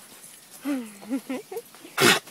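A woman's voice making a brief wordless sound, a drawn-out low 'ooh' followed by a couple of short laughing syllables, about half a second in.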